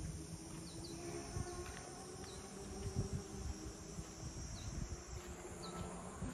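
Insects singing in a steady high shrill drone that cuts off abruptly about five seconds in, with a few short high chirps scattered over it and irregular low thuds underneath.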